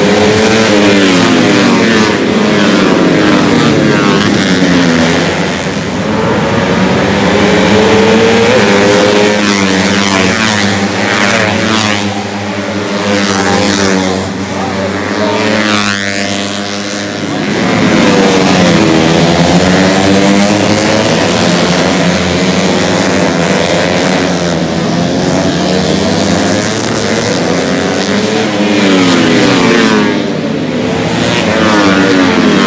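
A pack of Yamaha Jupiter underbone race motorcycles, small four-stroke single-cylinder engines, passing at high revs through a corner. Several engines are heard at once, their pitches rising and falling as the riders brake, shift and accelerate away, the sound swelling with each passing group.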